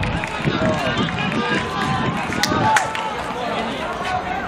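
Players and people on the touchline shouting and calling out across an outdoor rugby pitch, with wind rumbling on the microphone. Two sharp knocks stand out about two and a half seconds in.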